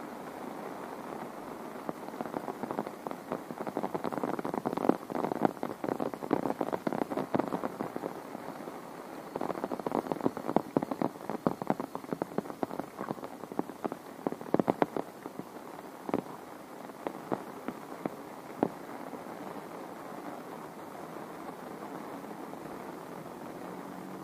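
Steady rain hiss, with two spells of dense, irregular crackling taps from large drops striking something close by in the first fifteen seconds, thinning to a few scattered taps a little later.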